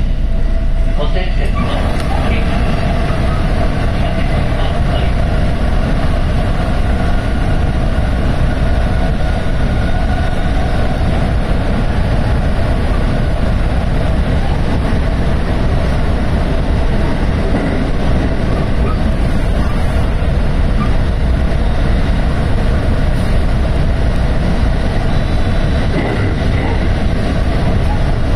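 JR West 223 series 2000 electric train running at speed through a tunnel, heard from behind the driver's cab: a loud, steady rumble of wheels on rail with a faint steady hum. The noise swells about a second and a half in as the train enters the tunnel.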